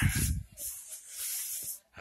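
A low bump, then about a second of dry rubbing hiss that stops suddenly near the end: a work-gloved hand brushing over wood paneling and a window frame, close to the phone's microphone.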